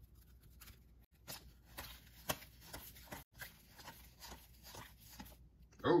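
A stack of paper trading cards handled and flipped through by hand: a soft, irregular run of card-on-card flicks and slides, one sharper flick about two seconds in.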